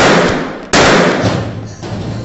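A handgun shot about three-quarters of a second in, ringing out and dying away over about a second, after the tail of a shot fired just before.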